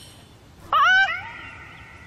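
A person's short, high-pitched cry of "ah!", rising then falling in pitch, about two thirds of a second in.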